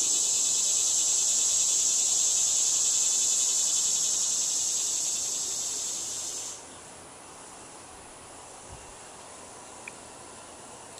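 An insect calling: a steady, high-pitched pulsing buzz that cuts off suddenly about six and a half seconds in, leaving faint outdoor background noise.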